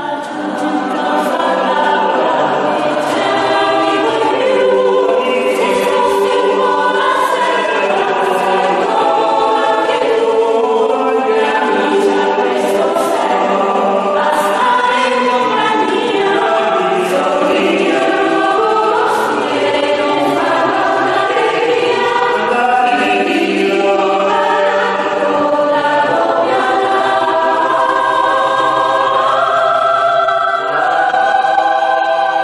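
A small mixed-voice polyphonic choir sings unaccompanied in a church. Several voice parts move in harmony, with steady, sustained notes changing every second or so.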